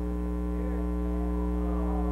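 Steady electrical hum: a low drone with a stack of fainter steady tones above it, unchanging throughout.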